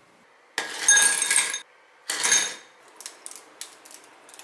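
Ice cubes dropped into a glass tumbler in two lots, clattering and clinking with a ringing glassy tone, the first lasting about a second and the second shorter; a few light clicks follow.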